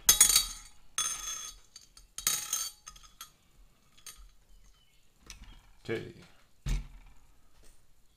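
Hands handling the clear plastic cover of a small digital scale and setting a 210 mm carbon-fibre racing quadcopter down on it: three short clattering, clinking bursts in the first three seconds, then a few soft taps and a single low knock near the end.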